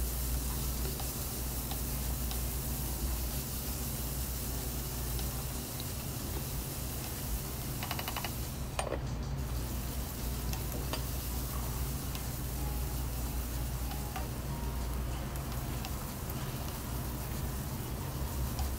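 Chopped red onion sizzling as it fries in oil in a stone-coated pot, stirred with a wooden spoon that scrapes and taps against the pan, over a steady low hum.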